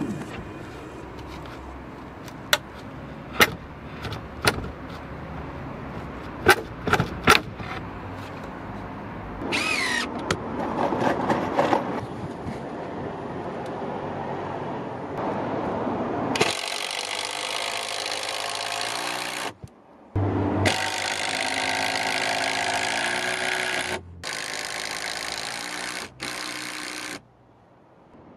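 Cordless impact driver driving long screws to fix a new timber alongside a sagging rafter, in three or four runs of a few seconds each with brief stops between them. Before that, several sharp knocks of timber being set in place against the rafters.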